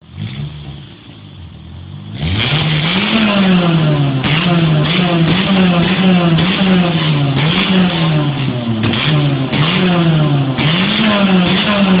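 Tuned Peugeot 106 hatchback engine, quiet at first, then revved up and down over and over from about two seconds in, about once a second. Pops and crackles come from the exhaust, which is shooting flames.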